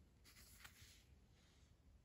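Near silence, with a faint rustle and light ticks in the first second from a plastic card holder being handled.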